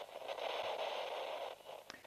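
A steady hiss like radio static, added as an edited sound effect under an animated title card; it stops about a second and a half in, followed by a faint click.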